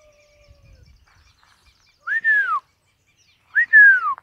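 A person whistling two loud whistles about a second and a half apart, each a quick rise and then a long fall in pitch, the kind of whistle used to call dogs.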